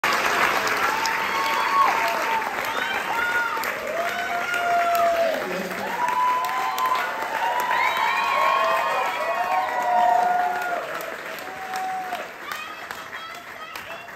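Theater audience applauding and cheering, with many overlapping whoops and shouts over the clapping. It thins out and dies down near the end.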